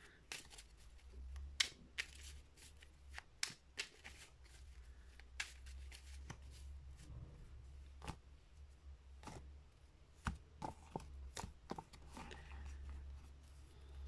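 A tarot deck being shuffled by hand: faint, irregular clicks and slaps of cards, over a steady low hum.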